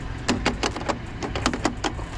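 A quick run of sharp plastic clicks and clatters, about ten in under two seconds, as the handset of a wall-mounted outdoor call-box phone is hung back on its hook.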